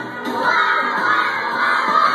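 A group of young children shouting together in many high voices, starting about half a second in.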